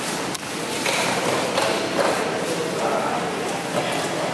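Busy fish-market background of indistinct voices, with a few short knocks of a cleaver blade against a wooden chopping block as fish is cut.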